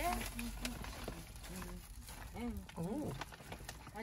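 Plastic food bags rustling and crinkling as hands rummage in a soft cool bag, with quiet voices in the background.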